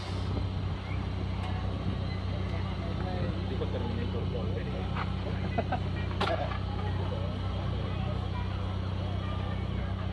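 An engine idling steadily, a low even hum, under faint chatter of people nearby.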